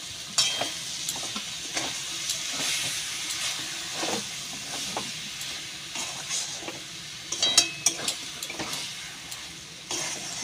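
A banana-flower and prawn mixture sizzles in a kadai while a spatula stirs it, scraping and clicking against the pan. A quick cluster of sharp clinks comes about seven and a half seconds in.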